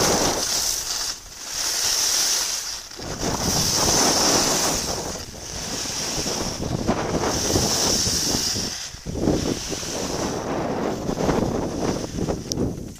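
Skis hissing and scraping over packed snow in a run of turns, each turn swelling and fading about every two seconds, with wind rushing over the microphone.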